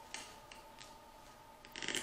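Hands working a flak vest's front fastening at the belt: a few faint clicks, then a rapid crackling tear near the end as the stuck fastening is pulled loose.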